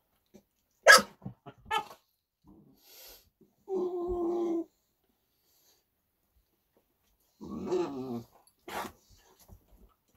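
Pit bulls growling and barking over a piece of bread, the sound of a dog guarding food: a sharp bark about a second in, a low growl of about a second near the middle, and another growl followed by a short sharp bark near the end.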